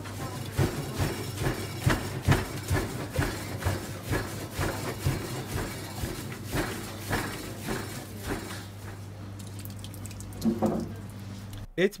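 Gloved hands kneading a large batch of çiğ köfte mixture in a steel bowl: irregular wet squelching and slapping strokes over a steady low hum. The sound cuts off abruptly near the end.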